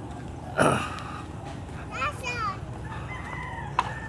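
A rooster crowing from about halfway through: a few short sweeping notes, then one long held note. A brief loud noise sounds about half a second in.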